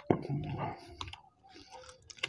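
Close-miked chewing and wet mouth sounds of people eating chicken curry and paratha by hand, with short smacks and clicks. The loudest stretch comes in the first second.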